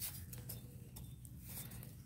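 Faint crunching and ticking of a finger pressing into dry, crumbly soil, with one short click at the very start over a low background hum.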